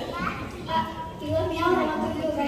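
Children's voices talking, with no words clear enough to make out.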